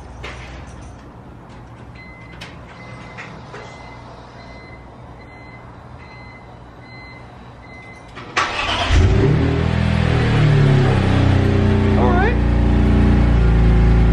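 A faint beep repeats for several seconds. Then, about eight seconds in, the BMW E46 M3's S54 inline-six cranks and catches, settling into a much louder, steady idle through its new Rogue Engineering exhaust. It is a warm start, not a cold one.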